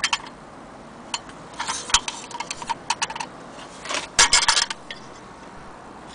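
Brass objects clinking and knocking together as they are handled: a scatter of short sharp clicks, with a denser clatter about four seconds in.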